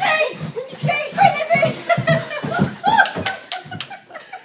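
Several people's excited voices and laughter in a small room, with a few sharp knocks near the end.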